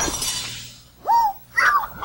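Cartoon sound effect of a brittle object shattering with a crash at the start, its breaking noise fading out over about half a second, followed by two short, frightened vocal whimpers from a cartoon character.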